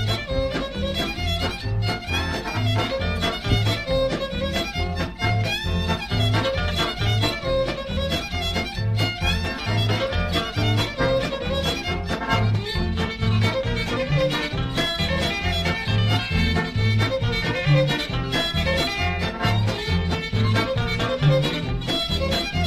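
Ukrainian-style old-time polka from a record: a bowed fiddle melody over a band accompaniment with a steady alternating bass beat.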